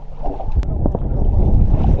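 Wind buffeting an open microphone and choppy water lapping against a layout boat's hull, with a couple of small knocks about half a second to a second in.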